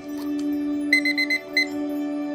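Countdown timer alarm beeping as it reaches zero: a quick run of short, high beeps, then one more. Soft ambient music with a steady drone plays throughout.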